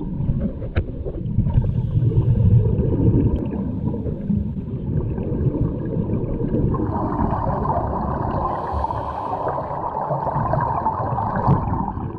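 Underwater sound of a scuba dive picked up by the camera: a steady low rumble with the gurgle of divers' exhaled regulator bubbles, a louder bubbling hiss coming in about seven seconds in.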